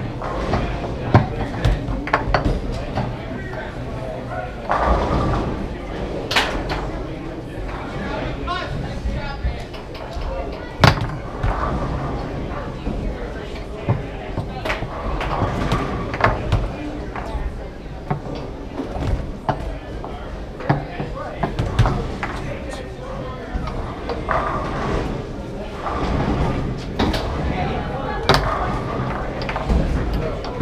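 Foosball being played: irregular sharp cracks and clacks of the ball struck by the plastic men and hitting the table walls, with rods knocking, over a background of voices in a large room.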